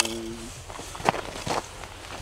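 A man's drawn-out voice trails off in the first half second. Then come a few light, scattered crunches and clicks of movement on snow-covered ice.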